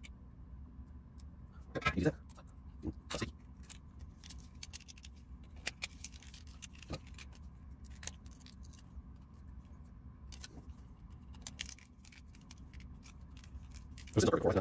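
Scattered small clicks and taps of a plastic remote-control case and its circuit board being handled and fitted together by hand, over a steady low hum.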